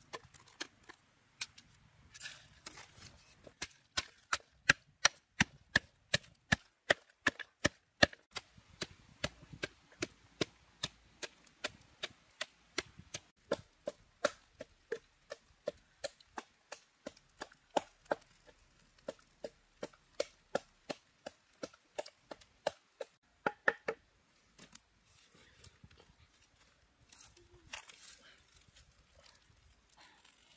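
A knife chopping on a wooden cutting board in steady, even strokes, about three a second, which stop after about twenty seconds.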